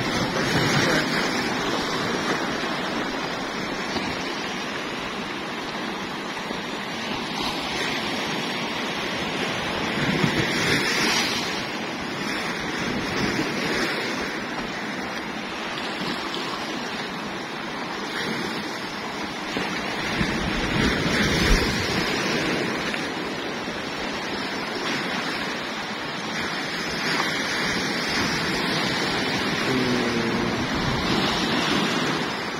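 Strong sea surf breaking on and washing over rocks: a continuous rush of water with several louder surges as bigger waves break.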